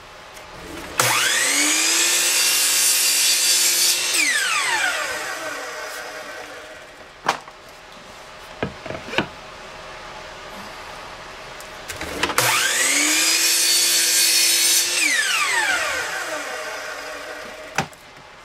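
Miter saw starting with a rising whine and cutting through a plywood board, then its blade winding down with a falling whine after the trigger is released. This happens twice, with a few clicks and knocks between the two cuts.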